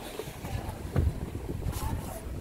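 Wind rumbling on the microphone of a handheld camera, with handling bumps; the strongest bump is about a second in.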